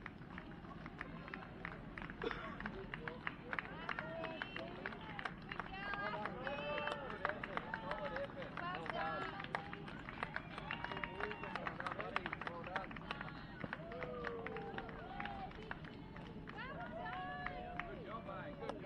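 A crowd of spectators talking and calling out, several voices overlapping, with frequent short sharp taps mixed in.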